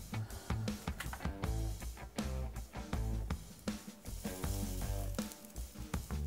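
Heavy metal music with distorted guitar and a drum kit, playing at low level with a steady beat.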